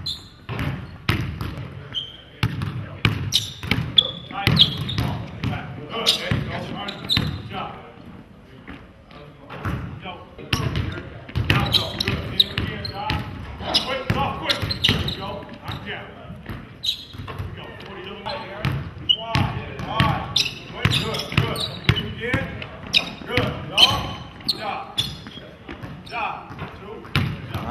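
A basketball bouncing on a hardwood court, many sharp bounces at an irregular pace as it is dribbled and shot.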